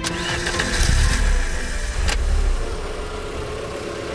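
Vintage car engine starting: a sudden start and a strong low rumble that peaks about a second in and then settles, with a sharp click about two seconds in, over background music.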